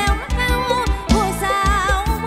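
Live mor lam toei band music: a woman singing a wavering, ornamented melody over an electric band with a steady drum beat.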